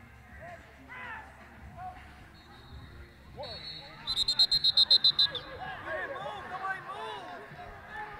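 Distant shouts and calls of players echoing in a large indoor fieldhouse. About four seconds in there is a quick run of about ten high, shrill chirps.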